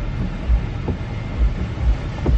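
Steady low rumble inside a car's cabin, with a few dull low thumps.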